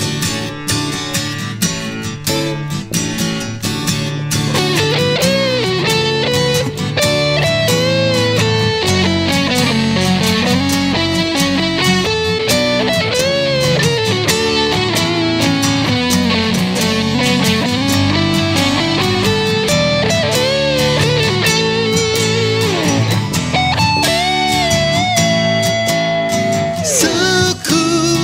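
Instrumental guitar break. Over a strummed acoustic guitar, an electric guitar solo comes in about four seconds in, played with string bends and vibrato, and it ends on a long held note near the end.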